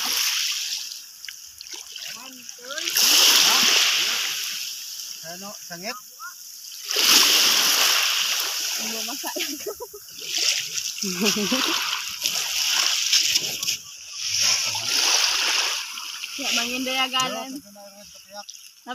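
Water splashing in repeated heavy surges, about five in a row a few seconds apart, with voices talking in the gaps between them.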